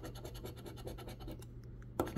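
A large metal scratcher coin scraping the coating off a paper scratch-off lottery ticket, in a quick run of short, quiet back-and-forth strokes.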